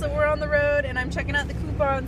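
A woman talking over the steady low rumble of a car on the move, heard from inside the cabin.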